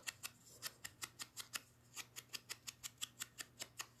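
A sponge dauber dabbed quickly and lightly on the edge of a small cardstock circle, inking it: a run of soft, quick taps, about six or seven a second.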